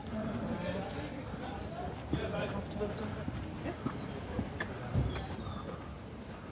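Footsteps of several people walking on pavement, with indistinct talk among them.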